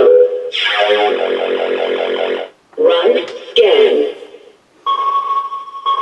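Fisher-Price Imaginext Battle Rover toy playing its battery-powered electronic sound effects through its small speaker: a buzzy start-up sound, a short speech-like voice line, then a steady electronic tone near the end.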